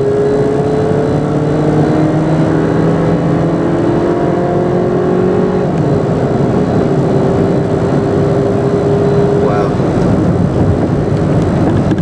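A car's engine and road noise while driving, the engine note rising as it gathers speed, dropping back and rising again in the first half, then holding steady.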